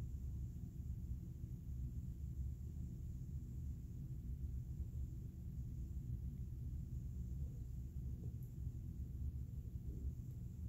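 Steady low rumble of room tone with no distinct events.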